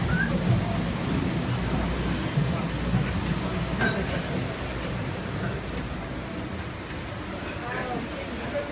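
Steady rushing noise of a water wheel driving a workshop's belt machinery, with people talking under it and a single click about four seconds in. The noise eases slightly toward the end.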